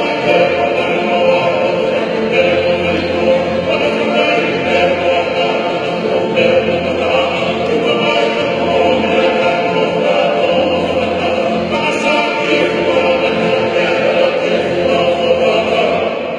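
A men's group sings a Tongan hiva kakala in full chorus, accompanied by acoustic guitars, loud and continuous.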